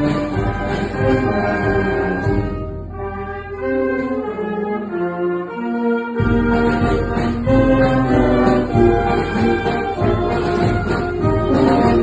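Wind band (banda filarmónica) playing a march, with clarinets, saxophones and brass. About three seconds in, the low instruments drop out for a lighter passage. They come back in with the full band about six seconds in.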